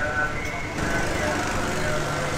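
A steady low rumble with faint voices in the background.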